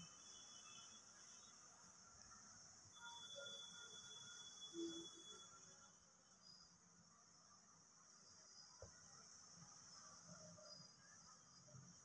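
Near silence: faint room tone with a steady, faint high-pitched hiss and a few soft, faint sounds near the middle.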